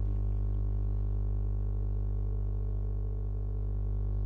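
A steady low hum with many overtones, unchanging throughout.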